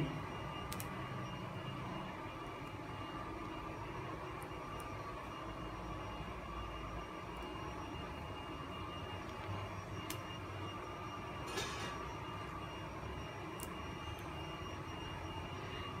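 Steady hum of a factory hall, with a few faint clicks and a short rustle about eleven and a half seconds in from hands taping around the resin printer's screen window.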